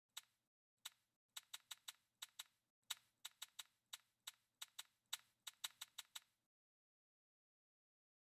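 Chip-placing sound effect of an online live blackjack game's betting screen: a quick run of about two dozen sharp clicks, many in close pairs, as bets are stacked onto the betting spots. The clicks stop about six and a half seconds in.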